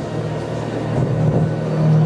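A low, steady rumbling drone from the hall's sound system, swelling slightly near the end.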